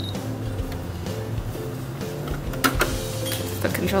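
Computerized sewing machine's motor whirring as the needle is lowered by push-button, a few faint clicks from the machine, over steady background music.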